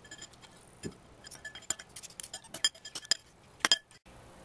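Metal fork and spoon clinking and scraping against a bowl while eating: a quick, irregular run of light, ringing clinks, loudest in a cluster just before the end, with one duller knock about a second in.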